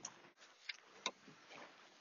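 Near silence broken by two faint clicks in quick succession from a car's door handle and latch as the door is opened.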